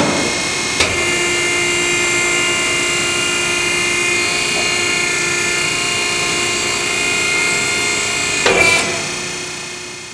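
ARI-HETRA tire-cutting machine running steadily, its electric motor turning a foam-filled tire against a fixed cutting blade. There is a knock about a second in and a brief clatter near the end, then the sound dies away.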